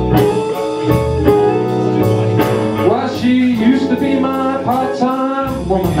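Live blues band playing: a hollow-body electric guitar and a drum kit with steady cymbal strokes, with a male voice singing.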